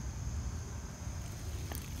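Woodland ambience: a thin, steady high insect drone over a low rumble, with a faint click near the end.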